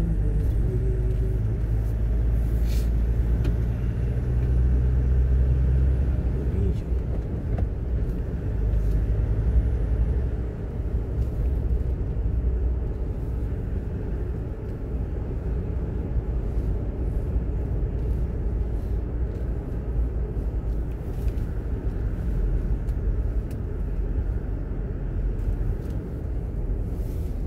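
A car driving along a narrow paved road: a steady low rumble of engine and tyres.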